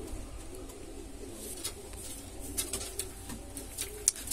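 Indian fantail pigeons cooing softly and steadily, with a few light clicks in the second half.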